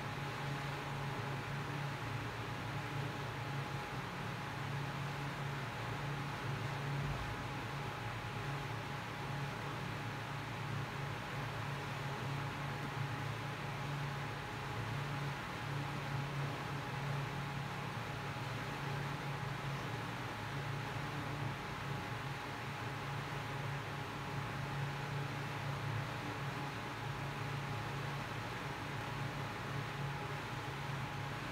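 Steady room noise: an even hiss over a low hum, with a faint steady whine above it and no distinct events.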